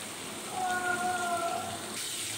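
Sautéed onions and freshly added chopped tomatoes sizzling in hot oil in a frying pan. A faint held tone sounds in the background for about a second, starting about half a second in.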